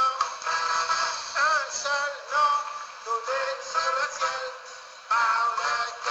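A Christian praise song: singing over music, the sound thin and tinny with no bass. The singing eases off briefly just before the end.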